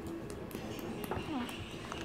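Fingers poking foamy slime in a plastic tub, giving faint scattered clicks, with a faint voice-like sound in the background.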